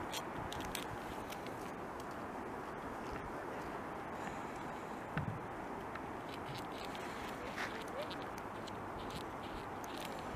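A beaver gnawing and chewing bark off a twig: scattered faint crunches and clicks, a little louder about five seconds in and again near eight seconds, over a steady rushing background noise.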